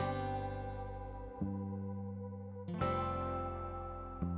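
Background music on acoustic guitar, with chords struck about every second and a half and left to ring.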